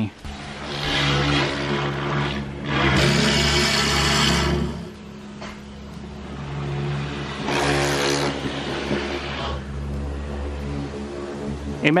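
Electric pressure washer running with a steady motor hum, its water jet hitting the window glass in three spells of hissing spray: about a second in, from about three to five seconds, and from about seven and a half to nine and a half seconds.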